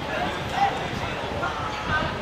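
Several short, sharp shouts from players calling during a football match, the loudest about half a second in.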